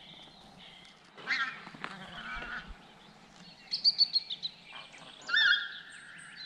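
A flock of wild geese calling in flight, with a quick run of honks about four seconds in and a louder, longer call near the end.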